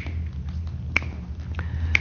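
Sharp clicks about a second apart, keeping a steady beat, over a low steady hum.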